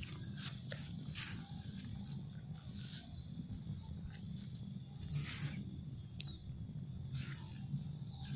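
Open-field ambience: a steady high insect drone over a constant low rumble, with a few short rasping sounds scattered through it.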